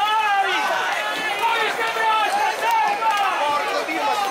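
A crowd of orange throwers shouting and yelling at once, many raised voices overlapping in a continuous loud din.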